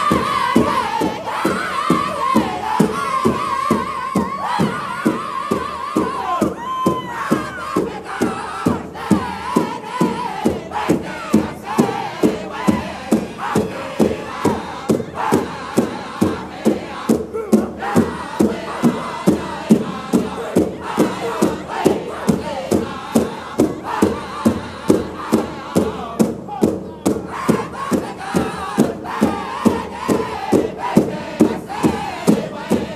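Pow wow drum group: several singers strike a large drum together in a steady, even beat, about three beats a second, and sing in unison over it. A high lead voice stands out near the start.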